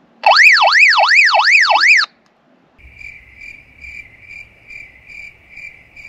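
Handheld two-way radio sounding a loud warbling call tone, sweeping up and down about three times a second for under two seconds. It is followed by a fainter high tone pulsing about twice a second.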